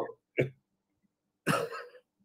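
A man laughing briefly: a short breathy burst just under half a second in, then a longer breathy laugh about a second and a half in.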